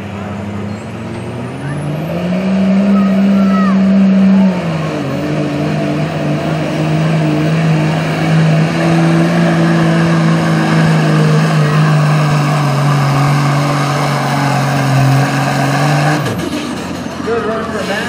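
Dodge Ram pickup's Cummins diesel straight-six pulling a sled under full throttle. It revs up about two seconds in and holds high. The pitch drops a little a few seconds later and sags slowly under load, then falls away sharply as the driver lets off near the end of the pull.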